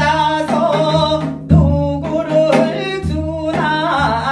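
A woman singing a Gyeonggi minyo (Korean folk song) line with heavy vibrato, accompanying herself on a janggu hourglass drum in gutgeori rhythm, with deep drum strokes about every second and a half.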